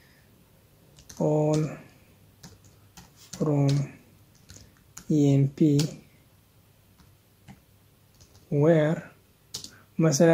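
Faint keystrokes on a computer keyboard as a SQL query is typed, broken by a man saying four short words, one at a time, which are the loudest sounds.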